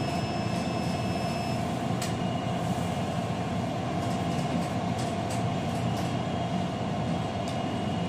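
Juki industrial sewing machine running steadily, stitching a zipper onto a garment, with a continuous motor hum and a few faint clicks.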